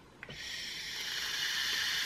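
A box-mod vape being drawn on in a long inhale: a short click, then a steady hiss of the firing atomizer and air pulled through it, growing slightly louder.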